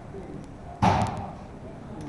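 A single sudden thump or bang a little under a second in, fading out within about half a second, over the low hum of a large room.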